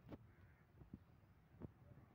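Near silence: quiet outdoor ambience with a few faint, short bird calls.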